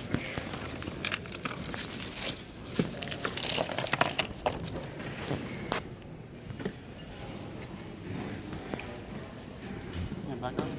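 Crinkling plastic print sleeves and clicking display pieces being handled while a vendor table is set up, with a busy run of rustles and clicks over the first six seconds that then goes quieter.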